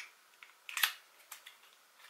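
Stiff cardboard box of a small eyeshadow palette being pried open by hand: a few sharp clicks and scrapes, the loudest a little under a second in.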